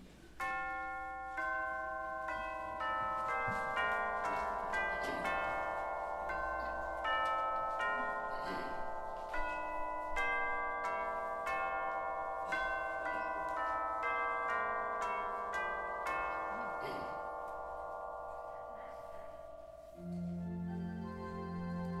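Chimes playing a slow melody to open the worship service, about two struck notes a second, each ringing on and overlapping the next. The ringing slowly fades near the end.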